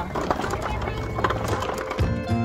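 Empty shopping cart being pushed over rough pavement, its wheels and wire basket rattling in a run of irregular clicks and knocks.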